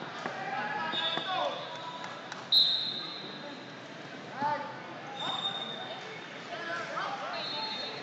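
Wrestling shoes squeaking on the mat in short, high squeaks, the loudest a sharp one about 2.5 s in, under shouting from coaches and spectators echoing around a large hall.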